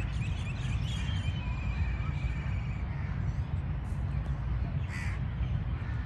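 Birds calling from their perches in the treetops: a drawn-out trilled call a little over a second in and a short harsh caw near the end, over a steady low rumble.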